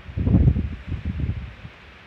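Wind buffeting a handheld phone's microphone: a low, noisy rumble in gusts, strongest in the first second and fading toward the end.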